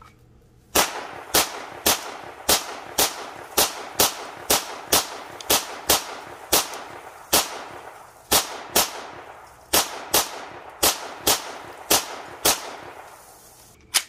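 CZ Scorpion EVO 3 9mm pistol-calibre carbine fired semi-automatically: about twenty shots at a steady pace of roughly two a second, with two short pauses and a last single shot at the end, each shot echoing briefly.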